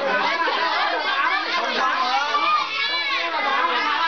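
Many children's voices chattering and shouting together while playing a group game, with one high call falling in pitch about three seconds in.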